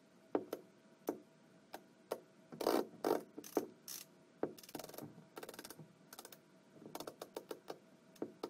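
Screwdriver tightening the screws of an RV entry door's latch strike plate: irregular clicks and ticks of the bit working in the screw heads, with quicker runs of ticks a little past halfway and near the end.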